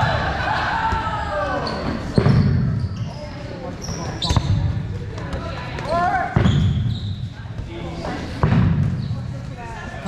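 Dodgeballs thudding hard off the floor and walls of a gym in four impacts about two seconds apart, echoing in the hall, with players shouting between throws.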